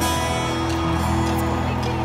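Amplified acoustic guitar playing the opening chords of a live song. The chords ring steadily, without singing yet.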